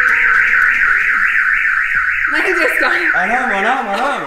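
Vehicle security alarm siren fitted to an old police bus, warbling up and down about four times a second. From a little past halfway a voice calls out over it.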